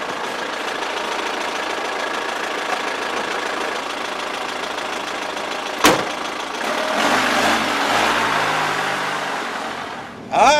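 Police jeep engine running steadily, with a single door slam about six seconds in; the engine then grows louder for a couple of seconds and eases off again.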